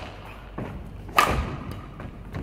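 A Yonex Duora 10 badminton racket, strung with Ashaway Zymax 66 Fire, striking a shuttlecock about a second in: one sharp, loud hit with a brief ringing ping from the strings, echoing in a large hall. Softer thuds of footwork on the court come around it.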